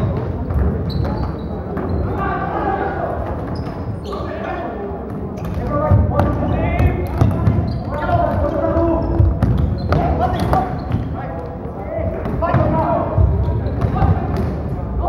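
Floorball game sounds: players' voices calling across the court, with sharp clacks of sticks and the plastic ball and thuds of footsteps on the wooden floor, echoing in a large sports hall.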